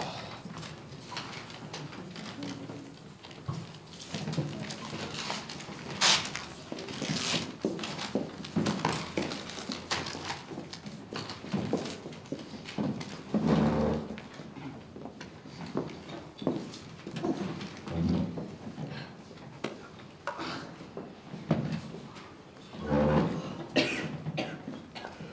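Paper slips rustling and small knocks and footsteps of people moving around a table as ballots are written and collected, with a few dull thumps.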